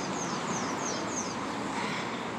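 Steady city street traffic noise, with a run of faint, quick high chirps in the first half.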